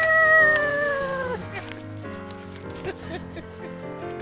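A person's long whoop, held for about a second and a half and sliding down in pitch, over background music that carries on alone after it stops.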